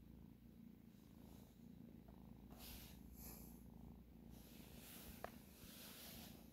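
A young tabby kitten purring softly and steadily close to the microphone, with a brief rustle midway.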